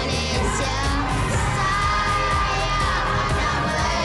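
A group of children singing and shouting together over a recorded patriotic pop song.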